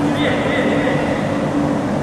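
Reverberant indoor sports-hall ambience: a steady rumbling din with indistinct voices and a low steady hum.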